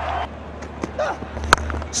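Cricket stadium crowd noise, with a single sharp crack of bat on ball about one and a half seconds in.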